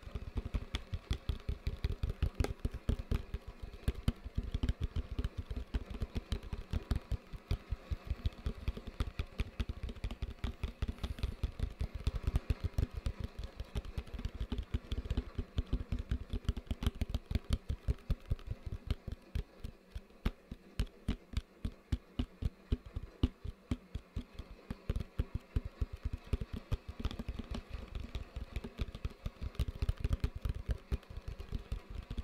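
Fast, continuous tapping with the fingers on a hollow plastic bucket, several light taps a second, easing off a little for a few seconds past the middle.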